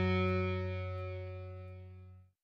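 A distorted electric guitar chord held and ringing out, fading steadily as the last chord of a rock song.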